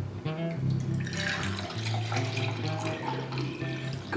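A drink pouring from a plastic bottle into a cup, a steady splashing pour starting about a second in, over background music.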